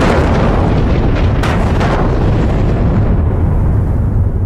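Open-pit gold mine blast: ammonium-nitrate charges in the rock go off suddenly, followed by a long, loud rumble of the breaking rock face, with a few sharp cracks a little over a second in.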